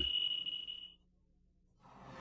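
A thin, steady high tone fades away over the first second, then comes a short gap of near silence, and music fades in near the end.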